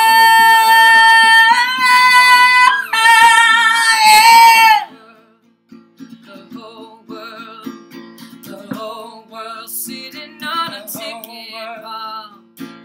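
A woman's voice belts one long high note over a strummed acoustic guitar, stepping up in pitch twice and breaking off about five seconds in. Quieter sung phrases and guitar strumming follow.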